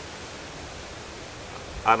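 Steady outdoor background hiss, even and without distinct events, before a man's voice starts just at the end.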